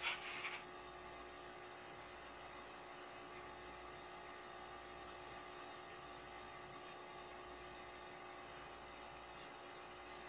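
Steady low electrical mains hum in a quiet room, with a brief rustle in the first half second.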